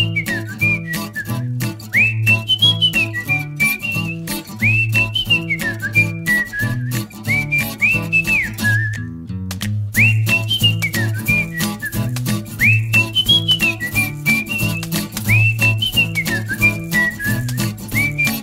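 Upbeat outro music with a whistled melody over a bouncy bass line and a steady clicking beat. The tune breaks off briefly about halfway through, then starts its loop again.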